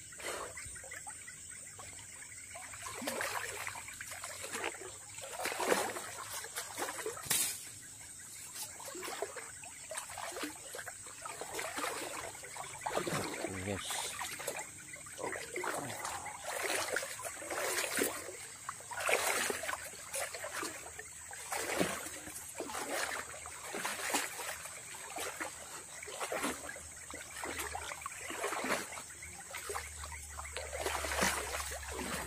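River water splashing and sloshing around a person wading through it, surging about every second or two with each stride.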